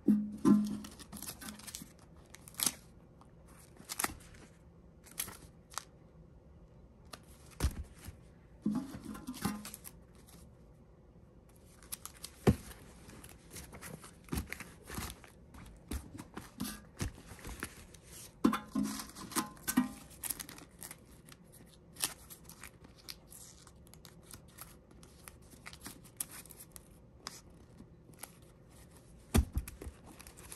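Rubber-banded bundles of paper banknotes being handled: irregular crisp rustles, flicks and taps as bundles are lifted out of a steel safe and set down on fabric, with a few duller bumps and short quiet gaps.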